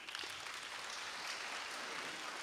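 Audience applauding steadily in a lecture hall, many hands clapping at once, marking the end of a talk.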